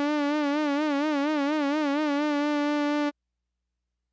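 Rob Papen Predator software synthesizer holding a single bright note, its pitch wobbling in a fast vibrato from the pitch mod LFO that grows deeper as the LFO amount is turned up. The note cuts off suddenly about three seconds in.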